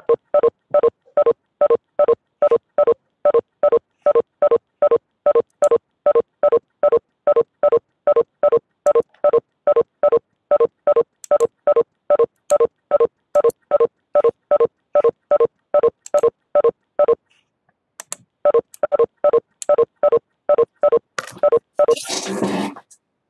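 Electronic beep repeating in an even, machine-steady rhythm, about three short beeps a second, with a break of about a second near the end.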